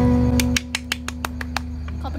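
Acoustic guitars' closing chord ringing and then cut short about half a second in, with one faint note left sounding, followed by a quick series of sharp clicks.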